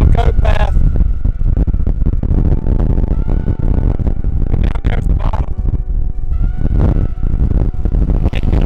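Strong wind buffeting the microphone, a loud continuous low rumble.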